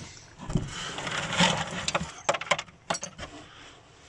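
A hand rummaging through debris in a catch box, rustling netting and loose bits, with a quick run of sharp clinks a little past two seconds in as spent balls and fragments knock together.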